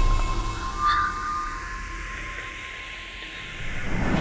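Eerie horror-trailer sound design: a held drone tone with a brief flare about a second in. It fades down through the middle, then a low rumble swells back up near the end.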